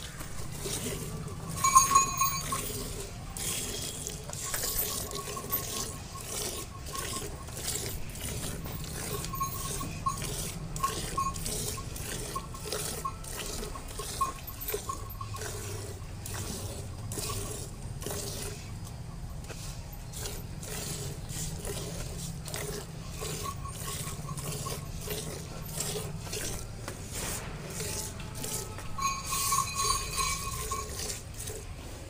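Buffalo being milked by hand into a steel bucket: milk jets squirting from the teats into the pail in a steady, rhythmic run of squirts.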